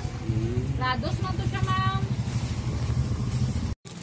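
Steady low rumble of a vehicle engine running nearby, with faint voices in the first half. The sound drops out abruptly just before the end.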